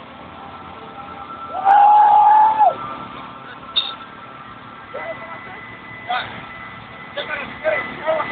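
A loud drawn-out shout, held on one pitch for about a second and dropping off at the end, over steady background chatter and street noise. A few short calls and words follow later.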